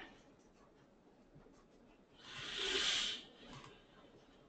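Quiet room tone with one soft, hiss-like rustle lasting about a second, a little past the middle.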